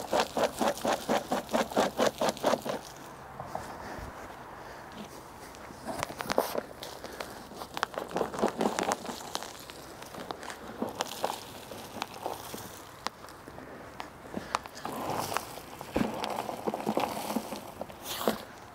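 Mulch poured from a flexible rubber tub bucket onto a garden bed: irregular rustling and crackling as it slides out and lands on the soil, with scattered small clicks. The first three seconds hold a quick, even run of pulses, about five a second.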